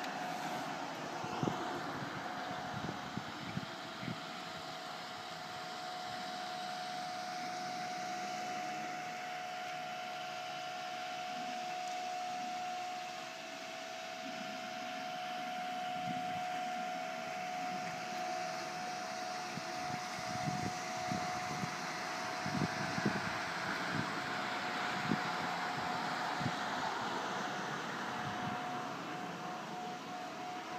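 A steady mechanical hum with one constant tone, over an even wash of outdoor noise, with a few faint clicks scattered through.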